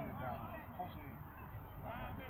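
Faint, distant shouts and calls from several voices overlapping.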